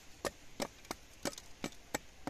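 Machete blade knocking lightly against wood, faint sharp taps about three a second.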